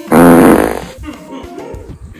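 A comedy fart sound effect: one loud, wavering burst of just under a second, with background music running underneath.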